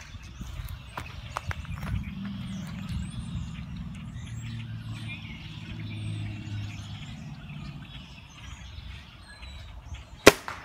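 Low steady rumble of a passing vehicle, swelling about two seconds in and fading near the end, with faint short bird chirps from the blackbirds above and a few light clicks in the first second and a half.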